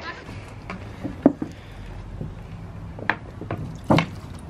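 Sunglasses being handled and dipped into a plastic tub of cleaning liquid: a few short clicks and small splashes, the sharpest about a second in, over a steady low hum.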